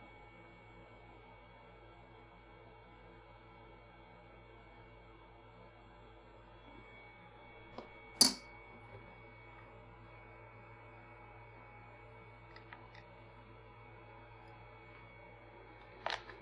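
Faint steady room hum, broken about halfway through by one sharp click, a small circuit board being set down on a hard plastic floppy-disk coaster.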